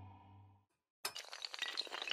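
A held low musical tone fades out, and after a short silence, about a second in, a row of dominoes starts toppling in a chain: a sudden, dense, rapid clatter of sharp clicks that keeps going.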